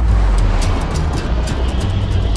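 Trailer sound mix: a deep, steady spaceship engine rumble sound effect under music with quick, sharp percussion hits.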